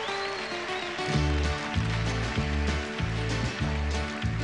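Live band playing a song's instrumental intro led by acoustic guitar, with a low bass line and a steady beat coming in about a second in.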